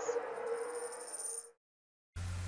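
Tail of an intro logo jingle: a held tone with a high shimmer fading away, then cut off to dead silence about one and a half seconds in.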